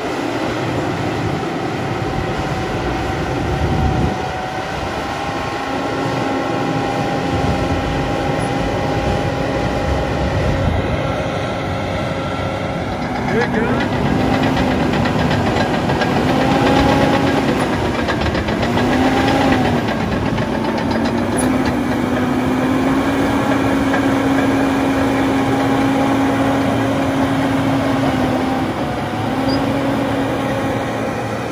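Caterpillar D6 crawler bulldozer running and travelling over dirt: a steady diesel drone with the clatter of its steel tracks. In the second half a high whine dips and rises in pitch several times as the machine works.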